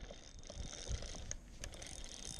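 Spinning reel being cranked to retrieve line, its gears giving soft clicking and whirring, over a low rumble.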